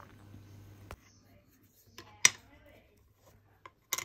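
A lead pencil tracing faintly on paper, followed by a few sharp clicks and taps, the loudest a little over two seconds in and another just before the end.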